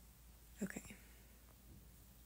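Quiet room tone with a brief, soft whispered murmur from a woman under her breath about half a second in.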